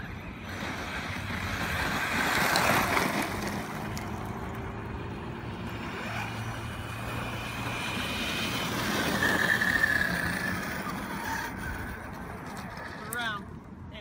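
Two 6S brushless electric RC monster trucks driving on loose desert dirt: electric motor whine and tyres scrabbling over dirt and gravel. The sound swells as they pass, about two seconds in and again near ten seconds.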